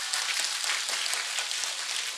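Audience applauding: a dense, even patter of many hands clapping at a moderate level.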